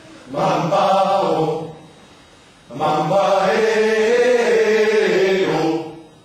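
Male vocal ensemble singing a cappella: a short phrase, a pause, then a longer held phrase that stops just before the end.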